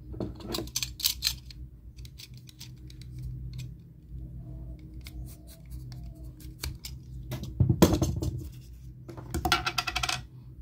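A foam strip being handled on a plastic toy wheel and cut with a snap-off utility knife: scattered clicks and scrapes, with a louder stretch of cutting a little past halfway through, over a low steady hum.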